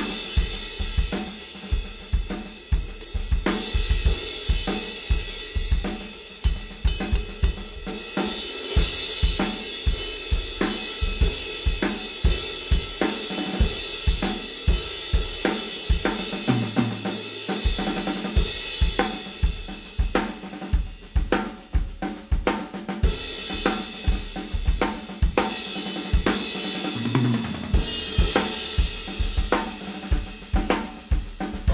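Drum kit groove on a Yamaha Recording Custom birch kit with an aluminium snare, kept on the Paiste Signature Prototype hi-hats and ride. The Paiste 19" Signature Prototype crash cymbal is struck for accents near the start and again at about 9, 19 and 28 seconds in, and its wash rings out over the beat each time.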